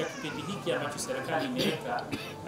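A man speaking into a microphone, his voice gliding up and down in pitch.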